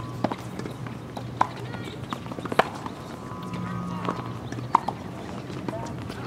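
Tennis rally: sharp pops of the ball off racket strings and off the hard court, one about every second, over a steady low hum and faint voices.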